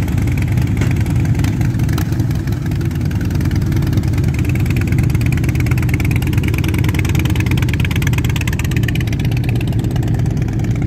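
V-twin cruiser motorcycle engine idling steadily, a loud even rumble.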